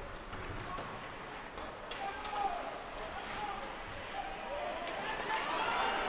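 Ice hockey rink ambience during play: faint voices from the arena, a single light knock about two seconds in, and the general noise slowly building toward the end.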